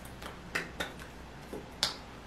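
Four short, sharp clicks and taps from a signer's hands striking and brushing together. The last one, near the end, is the loudest. A faint steady low hum runs underneath.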